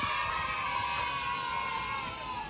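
A single long, high-pitched held call, sinking slightly in pitch as it fades out.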